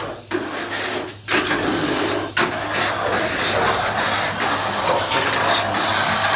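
Tamiya Mini 4WD cars running on a plastic race track, giving a steady mechanical whirring clatter with a few brief dips.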